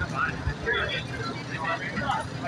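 Indistinct voices calling out in short fragments, with a dull low thud about half a second in.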